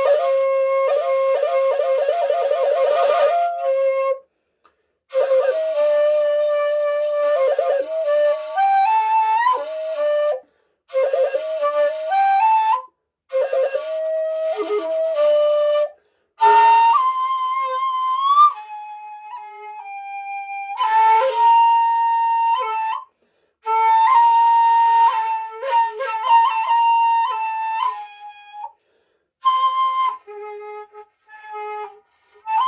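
A 1.8 shakuhachi, a two-piece bamboo end-blown flute, played solo in phrases broken by short breath pauses. The notes slide between pitches, with a quick trill on a low note at the start and a higher sustained note about two-thirds of the way through.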